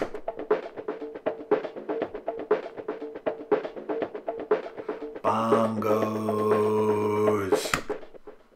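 Beat playback: a bongo drum-loop break filtered to strip its low and high end, a thin, skittery run of quick hand-drum hits. About five seconds in, the full beat comes back with bass guitar underneath, and it cuts off suddenly near the end.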